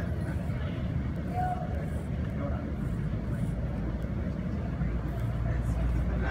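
Steady low rumble, strongest near the end, with faint indistinct voices in the background.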